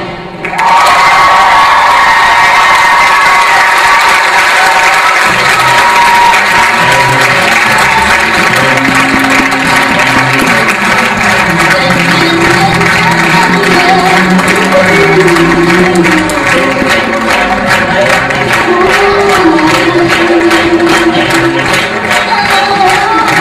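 Theatre audience applauding and cheering loudly over music. Both break in suddenly about half a second in and carry on steadily.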